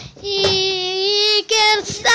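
A boy singing: one long held note lasting just over a second, then a short second note near the end.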